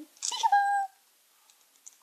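A single short, high-pitched cry, held on one pitch for about half a second, a quarter of a second in.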